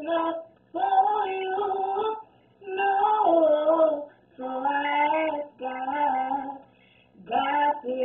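A girl singing a cappella, with several long held phrases separated by short pauses for breath and no backing music.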